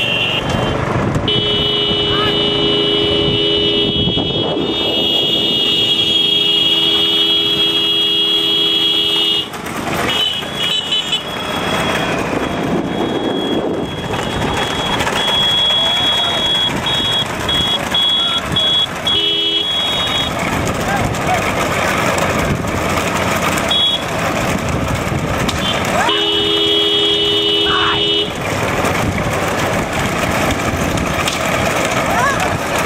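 Motorcycle horns sounding in long steady blasts, one lasting about eight seconds at the start and another shorter one near the end, with on-off beeping in between. Shouting voices and motorcycle engines run underneath.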